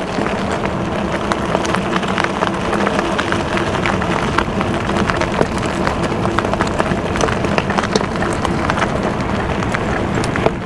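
E-bike rolling over a dirt and gravel track: steady tyre crunch and rattle full of small irregular clicks, with a faint steady hum underneath.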